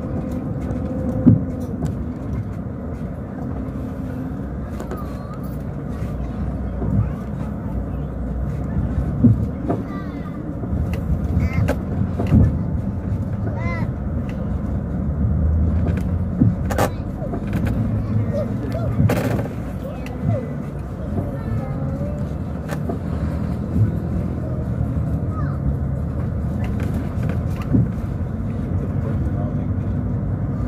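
Steady low engine and road rumble inside a moving coach bus, with occasional knocks and rattles from the cabin as it rolls over the rough road.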